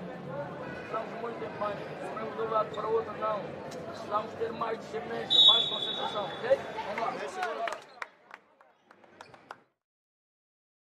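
A man talking without pause over arena background noise, with a short, steady high whistle about five seconds in. Near the end the sound drops to a few faint clicks and then cuts off to silence.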